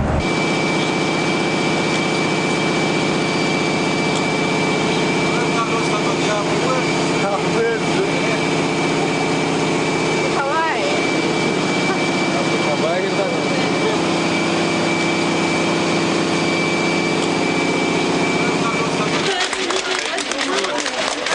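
Jet airliner engine noise: a steady low drone with a high steady whine, with faint voices in the middle; it stops shortly before the end.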